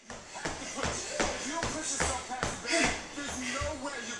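Workout-DVD soundtrack of upbeat music and a coach's voice, over shuffling and repeated thumps of hands and feet on a hardwood floor during a fast agility-ladder drill.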